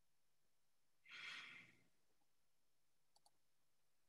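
Near silence, broken about a second in by one short breathy exhale like a sigh that fades out, then two faint ticks near the end.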